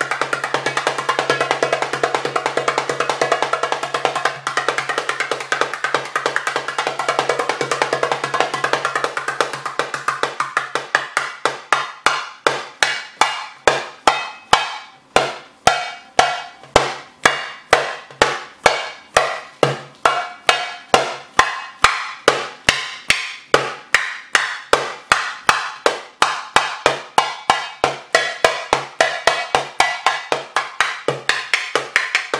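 Darbuka (goblet drum) played by hand: a dense, fast roll of strokes for about the first ten seconds, then separate sharp strokes at about three a second, each ringing briefly.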